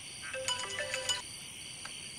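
Mobile phone ringing with a short electronic ringtone melody: one phrase of clear notes plays from just after the start to about halfway through.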